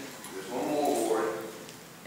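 A person's drawn-out voice sound lasting about a second, pitched and wavering slightly, between stretches of talk.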